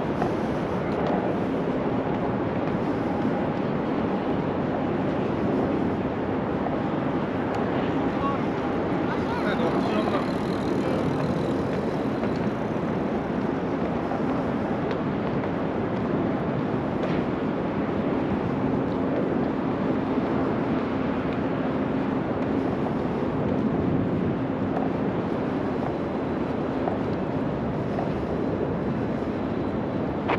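Steady open-air city ambience: a constant wash of noise with a distant traffic hum, and a faint low drone from about seventeen to twenty-four seconds in.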